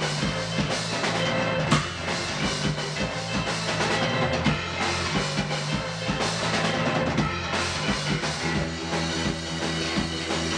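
A live punk rock band playing loud, amplified music: a Sonor drum kit, a bass guitar holding steady low notes, and a keyboard.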